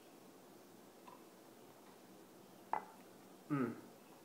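Quiet room tone, then a single sharp knock about three-quarters of the way through as a glass pint glass is set down on a stone countertop, ringing briefly.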